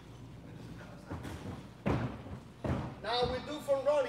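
Three thuds of a gymnast's feet and hands striking a carpeted spring floor during a tumbling skill, spaced a little under a second apart.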